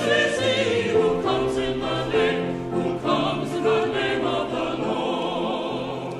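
Mixed church choir of men's and women's voices singing with vibrato, the sound fading near the end.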